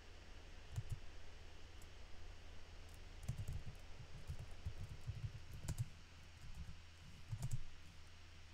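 Computer keyboard being typed on, faint: a couple of keystrokes about a second in, then quick runs of keystrokes from about three seconds on, over a low steady hum.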